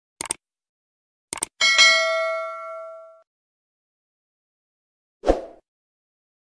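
Subscribe-button animation sound effect. A quick pair of mouse clicks is followed about a second later by two more clicks, then a bright notification-bell ding that rings and fades over about a second and a half. A short soft thud comes near the end.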